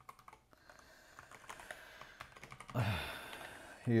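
Scattered keystrokes on a computer keyboard, a few sharp clicks then fainter taps. A short voiced hum comes from the person at the keyboard about three seconds in.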